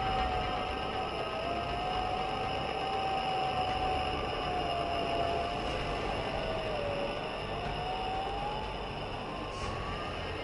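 An eerie electronic drone: one thin wavering tone over a steady hiss and rumble, sliding down about seven seconds in and gliding upward near the end.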